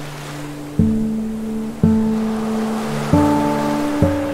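Slow, gentle acoustic guitar chords, one struck every second or so and each left to ring out, over the steady wash of ocean waves breaking on a beach.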